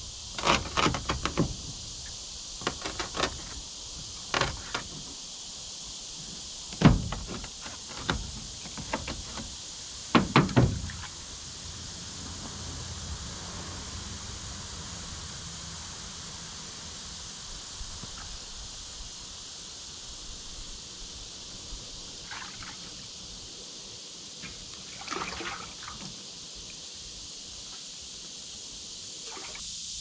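Handheld fish scaler scraping scales off a bluegill on a plastic cutting board, in quick irregular strokes for roughly the first ten seconds. After that only a steady high-pitched hiss remains, with a couple of faint small sounds.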